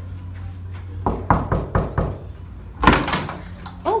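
Knuckles rapping on a room door, about five quick knocks, followed about a second later by a louder clunk of the door being unlatched and opened. A low steady hum runs underneath.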